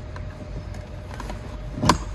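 A sharp click as a blue shore-power plug is pushed into a camper van's external power inlet near the end, over a steady low rumble.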